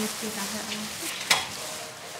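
Crinkling rustle of a disposable plastic protective gown as the wearer moves, with one sharp click a little past a second in.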